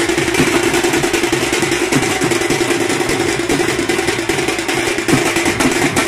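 Loud, steady din of a street procession, dense and continuous, with a constant low hum running underneath.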